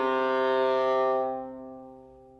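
Solo viola holding one long low bowed note for about a second, then the bow lifts and the note fades away.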